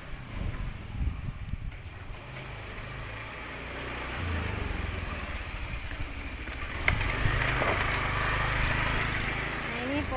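A motor vehicle's engine running close by, its rumble growing louder from about four seconds in and loudest near the end.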